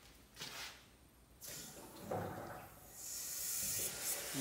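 Two-post vehicle lift being lowered: a hiss from the lowering valve starts about a second and a half in and grows louder.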